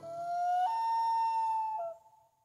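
Common loon giving its wail: one long call that slides upward, jumps to a higher note about two-thirds of a second in and holds it, then dips briefly near the end.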